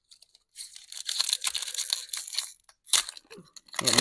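Foil wrapper of a 2024 Topps Series 1 baseball card pack crinkling and tearing as it is ripped open. About two seconds of crackling rustle lead to a short, sharp rip about three seconds in. The pack is glued shut and hard to open.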